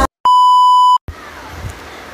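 A single steady electronic beep, one even high tone lasting about three-quarters of a second and cutting off abruptly, followed by quieter room noise.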